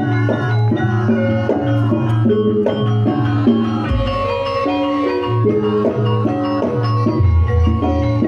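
Live music accompanying a Wonosobo lengger dance: a repeating melody of short pitched notes over a steady low beat, with a deep thump about four seconds in.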